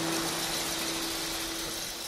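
Background music: a strummed acoustic guitar chord ringing on and slowly fading away.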